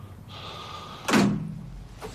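A door slammed shut once, about a second in: a sharp bang with a short low thud trailing after it.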